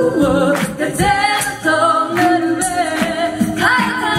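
Six women singing a cappella in close harmony, several voices moving together in chords over a steady beat.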